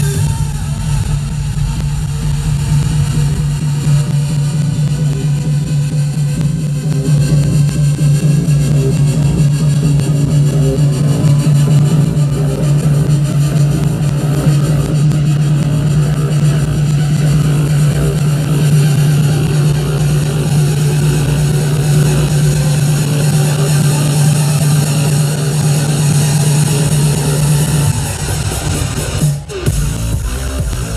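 Loud electronic dance music from a DJ set over a big arena sound system, with a heavy, steady bass line. It is recorded by a camera microphone that overloads on the volume, giving popping distortion. Near the end the bass cuts out briefly, then comes back in.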